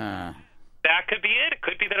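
Speech only: a drawn-out word trails off, a short pause follows, and then a man talks quickly over a telephone line.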